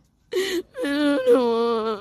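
A woman crying: a short breathy sob, then a long drawn-out wailing cry.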